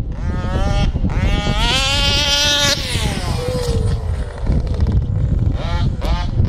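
HPI Baja RC buggy's BZM 50cc two-stroke engine revving up to high throttle, holding there for about a second and a half, then backing off so the pitch slides down over the next couple of seconds, with another short rev near the end. A low rumble runs underneath.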